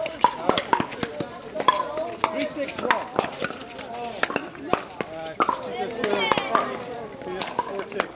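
Pickleball paddles striking a hollow plastic ball in a rally: many sharp pops at an irregular pace, several a second, over background voices.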